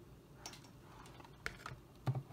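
Quiet room tone with a few faint, short clicks: one just before halfway through and two close together about three-quarters of the way in.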